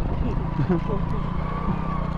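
100cc motorcycle engine running steadily at low revs while the bike is ridden slowly over a rough, stony dirt track.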